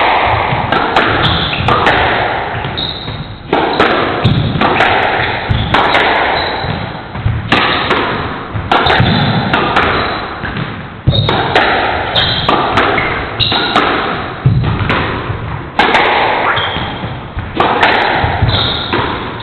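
Squash rally: the ball struck by racquets and smacking off the walls and floor in quick succession, sharp impacts every second or so, each ringing on in the echo of the enclosed court.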